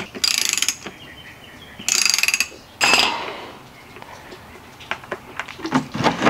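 Socket ratchet clicking in three quick bursts, with quieter stretches between, as it loosens a transmission drain plug.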